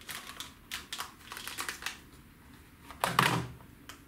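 Small clicks and taps as a carbon telescopic Bolognese fishing rod is handled, then a louder knock about three seconds in as the rod is set down across a small digital scale.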